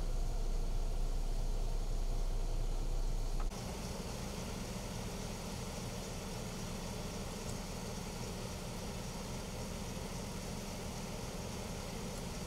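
Steady low rumble of a vehicle engine idling, with a faint hiss over it. About three and a half seconds in, the sound steps down slightly in level and its hum shifts a little higher.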